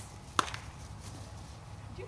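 A single sharp knock or snap about half a second in, against a low steady outdoor background hum.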